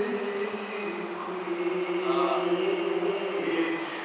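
A man's voice chanting in long held notes that step to a new pitch every second or two, a melodic recitation of verses rather than ordinary speech.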